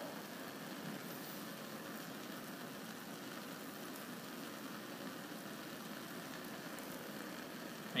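A Bunsen burner burning with a blue flame under a gauze, a steady, even rushing noise, as it heats a saltwater solution in an evaporating basin to drive off the water.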